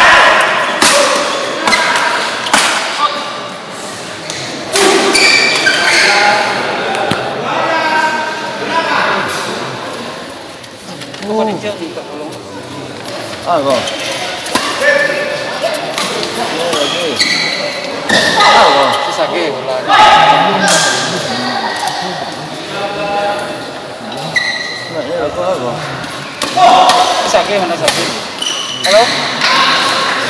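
Badminton doubles rally: sharp racket hits on the shuttlecock and thuds of players' feet on the court, with players' shouts and voices, echoing in a large hall.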